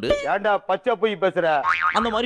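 A young woman talking, with a quick comedy sound effect that rises steeply in pitch near the end.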